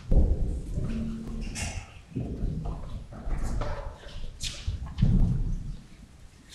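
Irregular low thumps and rustling with shuffling footsteps on a stone floor as a crowd of people moves about, with the loudest bumps just after the start and about five seconds in.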